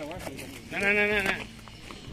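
A single drawn-out, wavering call lasting about half a second, about a second in, louder than the talk around it.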